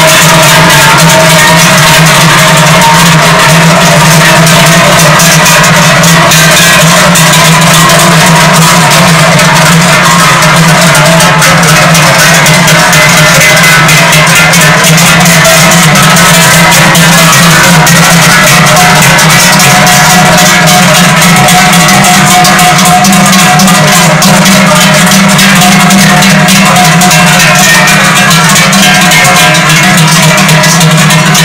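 Many large cowbells on parading cows clanging together in a continuous, very loud jangle, with several bell tones sounding at once and never pausing.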